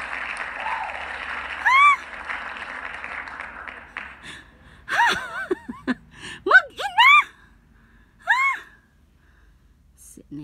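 Applause sound effect from an online name-picker wheel's winner pop-up, fading out about four seconds in. Short, high, rising-and-falling chirps sound once near the start and several times between five and nine seconds.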